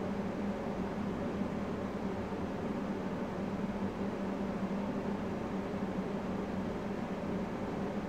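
Steady room tone: an even hiss with a low, constant hum underneath, as from a fan or electrical equipment, unchanging throughout.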